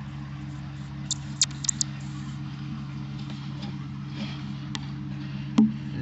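Steady low mechanical hum with several pitches held together, and a few short sharp clicks between about one and two seconds in and again near the end.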